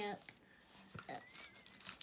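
Faint crinkling and tearing of adhesive tape being pulled off and handled around cardboard toilet paper rolls, with scattered small crackles and clicks.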